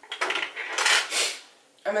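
Small hard cosmetic containers clinking and clattering together as they are rummaged through and one is picked up, in several quick bursts over about a second.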